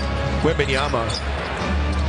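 Basketball being dribbled on a hardwood court.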